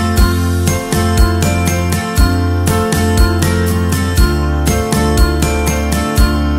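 Background music: an upbeat instrumental track with a steady beat, a low thump about once a second, a bass line and bright tinkling percussion.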